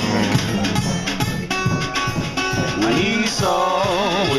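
Live band music: an acoustic guitar and drums play a loose, rhythmic groove, and a male singing voice comes in with a wavering line about three seconds in.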